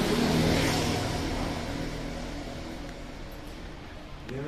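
A car engine idling with a steady low hum, growing gradually fainter over a few seconds.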